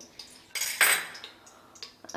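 A metal spoon clinking and scraping against a small glass bowl as ghee is scraped out into a pressure cooker, with the main scrape about half a second in.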